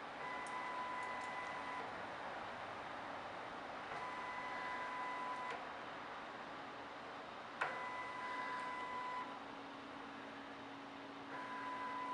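Motor drive of a linear rail moving a radar carriage in steps during a synthetic aperture radar scan. A steady high whine lasts about a second and a half, then stops for about two seconds while the radar takes its readings at each position. This repeats three times, a fourth run starts near the end, and there is a click as the third run begins, all over a faint steady hiss.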